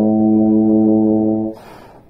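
Bass trombone holding one long, steady low note for about a second and a half, then cutting off, followed by the player's quick breath in.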